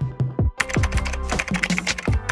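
Computer-keyboard typing sound effect: a fast run of key clicks starting about half a second in, accompanying text being typed onto the screen, over electronic background music with a steady beat.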